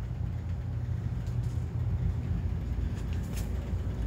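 A steady low machine hum, with a couple of faint clicks about one second and three seconds in.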